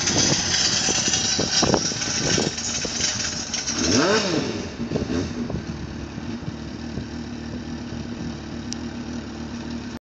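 Triumph TT600's inline-four engine running at low speed with short throttle blips in the first few seconds, one clear rev up and back down about four seconds in, then settling to a steady idle.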